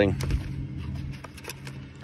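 Light clicks and knocks of plastic meter parts being handled in a foam-lined plastic carrying case, over a steady low machine hum.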